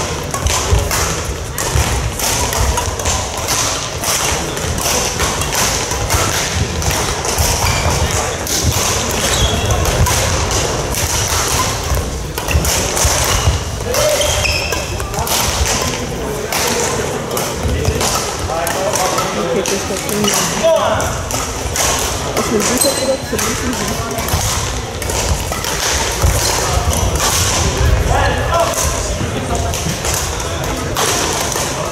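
Badminton play in a large sports hall: many sharp racket strikes on shuttlecocks and footfalls on the court floor from several courts at once, over a background of voices.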